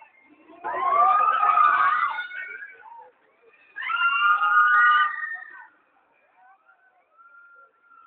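Riders on a swinging pendulum ride screaming together in two loud waves, one near the start and one about three seconds later, each rising as the ring swings up.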